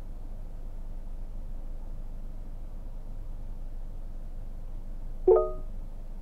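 Music playing low from the car's radio through the cabin speakers. About five seconds in there is a short electronic chime from the voice-command system.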